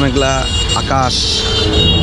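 A man's voice speaking in short bursts over the steady low rumble of street traffic.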